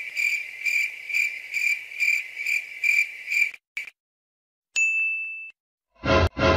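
A high, steady electronic tone that pulses about twice a second for nearly four seconds, then, after a short gap, a single short beep.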